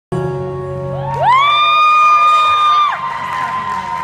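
Live band holding a final chord at the end of a song. A high voice whoops up and holds one long note for about a second and a half, then crowd noise carries on as the music dies away.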